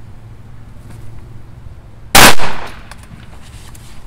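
A single shotgun shot at a pigeon, very loud, a little over two seconds in, its echo fading over about half a second.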